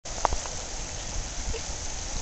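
Wind buffeting the microphone as an uneven low rumble over a steady hiss of light rain, with one short knock about a quarter second in.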